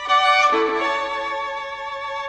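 Background music led by a violin, playing held notes that change to a new chord about half a second in.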